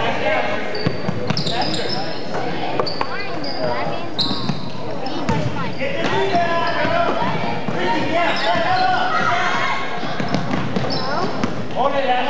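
Basketball game on a gym's hardwood court: the ball bouncing, sneakers squeaking in short high chirps through the first few seconds, and players' and onlookers' voices calling out, all echoing in the large hall.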